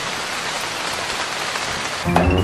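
Rain sound effect: a steady, even hiss of falling rain.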